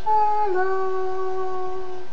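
A woman singing one long held note that steps down slightly in pitch about half a second in and is then sustained steadily.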